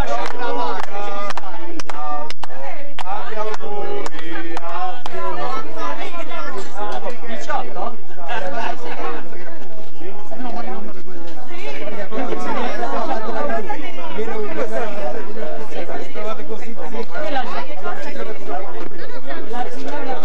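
Many people talking over one another at once, a lively crowd chatter, with a few sharp clicks scattered through it.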